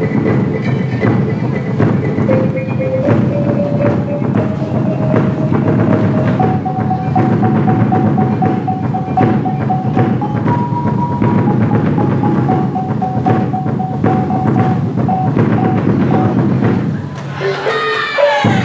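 Traditional Malay silat accompaniment: gendang drums beating a fast, steady rhythm under a serunai melody that climbs in steps and then holds long notes, with a brief higher note about halfway through.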